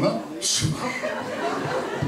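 A man talking with chuckling laughter over a microphone.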